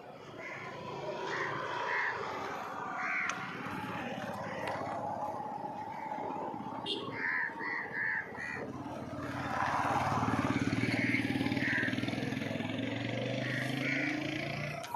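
Crows cawing in short bursts of several calls, while from about halfway through a motorcycle engine approaches and grows louder.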